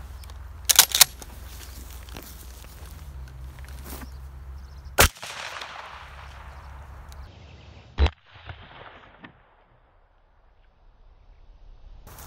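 12-gauge shotgun firing a 00 buckshot load: one loud report about five seconds in, its echo dying away over the next second or two, and a second report about three seconds later. A couple of sharp clicks come about a second in.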